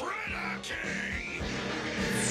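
Cartoon soundtrack: background music with a low pulsing tone. Over it, a high wavering cry or sound effect rises and falls twice.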